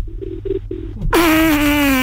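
A few faint, short low beeps on a telephone line, then a drawn-out buzzy note about a second long whose pitch falls slightly.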